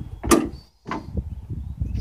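Plastic retaining clips of a 2016 Dodge Scat Pack's filler panel snapping loose as the panel is popped out, with a sharp pop about a third of a second in, then quieter handling of the plastic panel.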